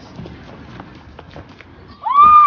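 Several faint, irregular footfalls of someone running on pavement, over outdoor street background noise.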